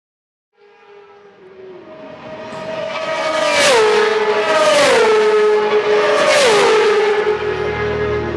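Race vehicles passing at speed, swelling up out of silence and then going by three times in quick succession, each engine note dropping sharply in pitch as it passes. Music with low brass comes in near the end.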